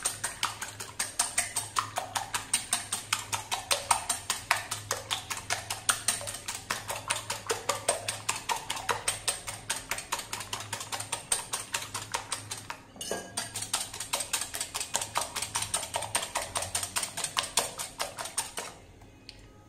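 Wire whisk beating eggs in a glass bowl, its metal tines clicking against the glass in a rapid, even rhythm, with a short break about two-thirds of the way through.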